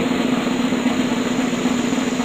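Snare drum roll, a steady fast rattle, played as a drum roll sound effect.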